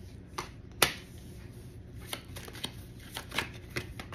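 Tarot deck being shuffled by hand: a series of sharp card snaps, the loudest about a second in.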